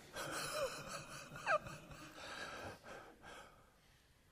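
A man's breathy, wheezing laughter: gasping breaths with a couple of short gliding vocal squeaks, the loudest about a second and a half in, dying away about three and a half seconds in.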